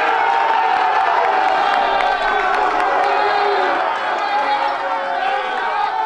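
A group of basketball players shouting and cheering together, many voices at once without a break, celebrating a win.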